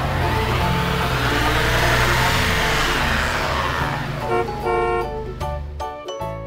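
A car engine sound effect that swells and then fades over about four seconds, laid over background music with a bass line. In the last two seconds the engine sound drops away and light chiming music notes take over.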